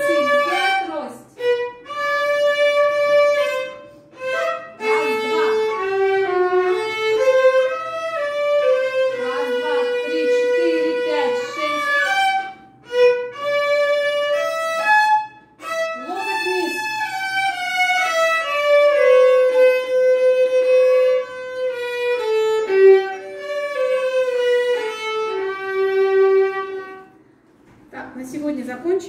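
Solo violin played with the bow: a slow melody of long held notes moving stepwise, with a few short breaks between phrases, the playing stopping shortly before the end.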